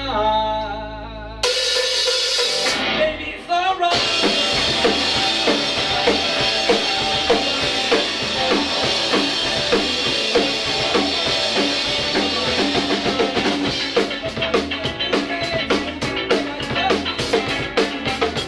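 Live band playing a reggae song on electric guitars, electric bass and drum kit. The full band comes in about four seconds in, and the drums' sharp rimshot and cymbal strokes stand out more near the end.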